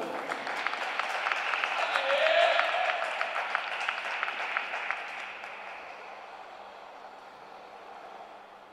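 Audience clapping in an ice arena, strongest in the first few seconds and then dying away.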